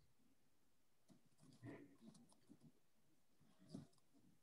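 Near silence on a video call: faint room tone with two soft, brief noises, about two seconds in and near the end.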